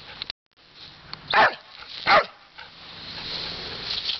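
Dog barking twice, two short loud barks about two-thirds of a second apart.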